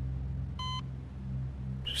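A single short electronic beep about two-thirds of a second in, over a low, steady hum.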